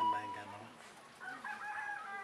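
A man's voice trailing off, then a rooster crowing faintly in the background: a held, slightly bending call starting just past the middle.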